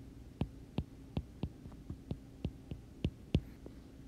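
Stylus tapping on an iPad's glass screen during handwriting: short clicks about three times a second, over a faint steady hum.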